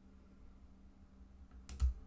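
A key press on a Casio fx-9750GIII graphing calculator near the end, two quick clicks close together, as the F1 key confirms deleting a list. A faint steady low hum lies under the otherwise quiet stretch.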